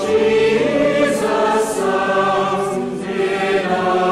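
Choir singing slowly in long held chords, several voices together.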